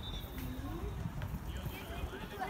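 Distant, indistinct children's voices calling out across a football pitch, over a steady low rumble, with a few faint ticks from ball touches or footsteps.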